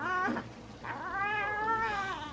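A newborn baby fussing with two drawn-out cries, the second starting a little under a second in and lasting about a second.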